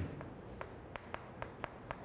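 Chalk striking and stroking a blackboard while characters are written: a faint, uneven series of sharp little clicks, roughly three a second.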